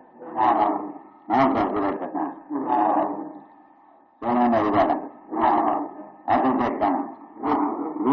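A monk's voice preaching in Burmese in short phrases with brief pauses, on an old 1960 recording with a faint steady whine underneath.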